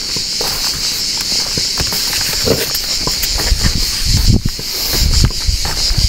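Steady high-pitched insect shrilling, with footsteps on dry ground and scattered low thumps, heavier in the second half.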